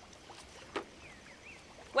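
Quiet background ambience with one short knock about three-quarters of a second in, followed by a few faint high chirps.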